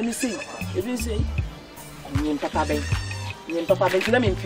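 A woman talking in Twi over background music with a repeating low bass note.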